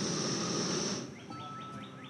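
Small backpacking gas-canister stove burner hissing at a high flame, then turned down at its valve about a second in, so the hiss drops to a quieter, steady level.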